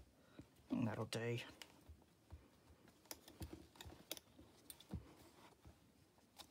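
Scattered light taps and clicks of hands pressing and handling paper layers glued into an old hardback book, with a brief murmured sound from the crafter about a second in.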